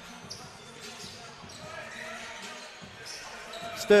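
A basketball being bounced on a hardwood court during play, over a steady low murmur of a gym crowd. A commentator's voice comes in at the very end.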